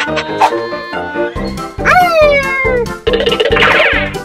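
Playful children's cartoon music, with a pitched cartoon sound sliding downward about two seconds in, then a fast, dense rattling dash effect over the last second that stops abruptly.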